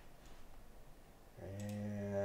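A man's voice holding one long, steady low note, like a drawn-out hum, starting about a second and a half in, with a couple of faint clicks.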